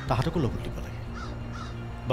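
A crow caws once, harshly, in the first half-second. Under it runs a soft, steady background music bed, with a few faint distant bird chirps.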